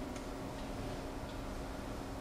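A pause in the dialogue: quiet stage-theatre room tone with a steady low hum and a few faint, slow ticks.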